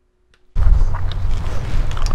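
Almost silent for about half a second, then loud, low, steady rumbling of wind buffeting a lavalier microphone outdoors, cutting in suddenly, with a few faint rustling clicks over it.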